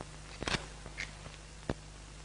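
A few faint, sharp clicks and a short scratch as cigarettes are lit, over the old film soundtrack's steady hiss and low hum.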